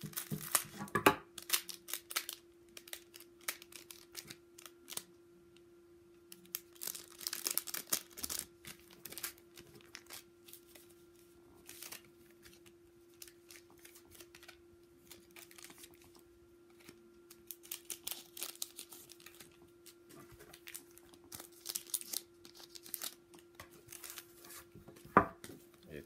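Scissors snipping open foil trading-card packs, then the crinkle of foil wrappers and the rustle of cards being handled, coming in several bursts with quiet gaps between. A faint steady hum runs underneath.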